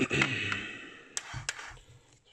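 A brief laugh, then two sharp clicks about a third of a second apart as a coffee cup is lifted off the drip tray of a pad coffee machine.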